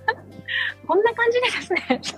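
A woman laughing nervously: a breathy burst about half a second in, then a run of quick laughs, from the fright of an insect that landed beside her.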